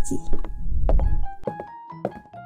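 Background keyboard music with steady piano-like notes, broken by a few light knocks in the first second, from plastic dolls and toy props being handled.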